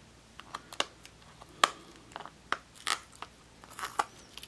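Fingers picking at tape on a small clear plastic eraser case, giving a string of light, irregularly spaced plastic clicks and crackles, with a slightly longer, louder crackle near the end.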